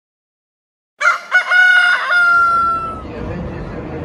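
A rooster crowing once, starting about a second in: a few short broken notes, then one long note that falls slightly in pitch and fades near three seconds. A low, steady background rumble comes up under its end.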